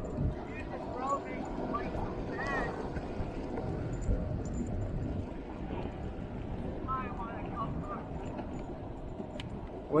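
Steady rolling and wind noise from riding along an asphalt road, with a few faint voice fragments about a second in and again near the three-quarter mark.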